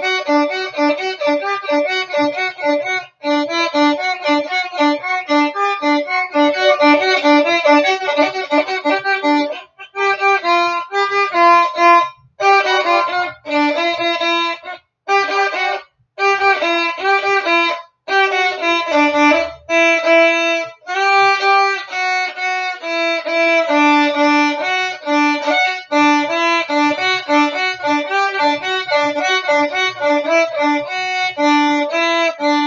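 Solo violin, bowed: a quick run of short notes, then phrases broken by several short pauses in the middle, before the quick notes return.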